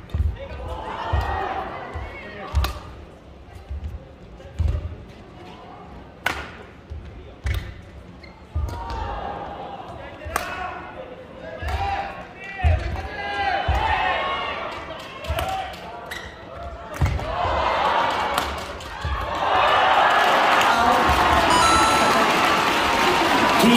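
Badminton rackets striking a shuttlecock back and forth in a long rally, one sharp hit every second or two, with shoes thudding on the court and voices calling out. From about three seconds before the end, the crowd cheers loudly.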